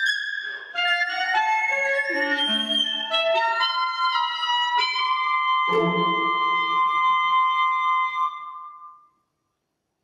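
Live chamber performance by three solo clarinets with strings and harpsichord: a moving passage that settles on a held chord about six seconds in, its high note sustaining and then fading out about nine seconds in.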